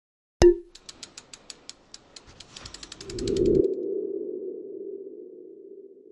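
Logo-animation sound effect: a sharp hit with a brief ringing tone, then a quick run of ticks that speeds up, then a low tone that swells about three seconds in and slowly fades away.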